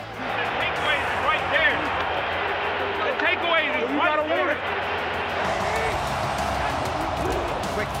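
Stadium crowd cheering loudly with voices shouting over it, reacting to a quarterback sneak stopped short on fourth down.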